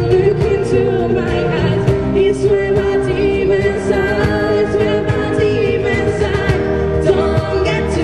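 Live acoustic band playing a song: a woman singing lead over strummed acoustic guitars and bass guitar, with a steady beat on a cajón.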